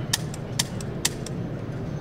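Dry-fire trigger clicks of an unloaded gun: three sharp clicks about half a second apart in the first second, over steady background noise.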